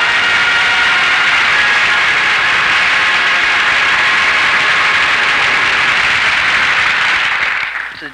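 Audience applauding steadily, dying away near the end; the last notes of the theme music fade out under it at the start.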